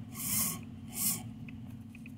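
Small brushed DC motor, run through an RC speed controller by the transmitter's stick, spinning up in short bursts, the last about a second in. A steady low hum lies underneath.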